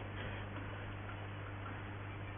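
Shortwave receiver hiss and static tuned to 9400 kHz, with a steady low hum underneath and a few faint ticks. No voice or data tones are in the signal.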